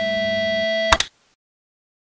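Intro jingle ending on a held, ringing guitar chord, cut off by a sharp click about halfway through, then dead silence.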